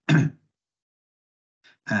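A man's single short cough.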